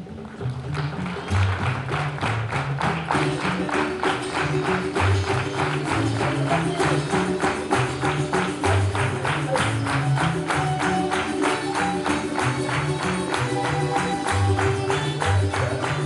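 A tuna ensemble of Spanish guitars, bandurrias and a double bass playing a brisk Latin American song. The playing starts just after the beginning with fast rhythmic strumming over a moving bass line, and a held melody line comes in about three seconds in.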